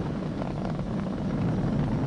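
Falcon 9 rocket's nine Merlin 1D engines heard from a distance during ascent as a steady low rumble.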